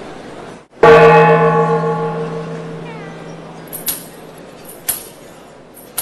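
One loud stroke on a large bell-like metal percussion instrument, ringing with several tones and fading over about three seconds. It is followed by sharp, high metallic taps about once a second, the opening of a traditional music piece.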